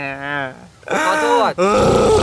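A person's voice in a drawn-out, whining groan that breaks off, then a short spoken apology.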